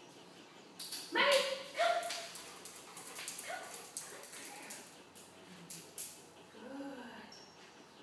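A woman sharply calls a dog's name once, about a second in. A few short, scattered dog sounds and clicks follow as the dog moves about.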